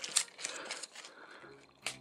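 Hard plastic parts of a transforming robot toy clicking as they are handled and tabbed back into place: several small separate clicks.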